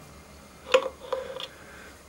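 A splined steel collar being pulled off a splined engine shaft by hand. There is one sharp metallic click with a short ring about three quarters of a second in, then two fainter clicks.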